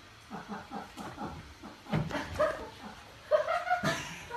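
A dog yipping and whining in a quick series of short calls, ending in one longer whine near the end. A sharp knock sounds about two seconds in, and another just before the end.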